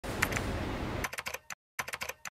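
Keyboard typing sound effect: a dense run of key clicks for about the first second, then short bursts of clicks with brief silent gaps between them.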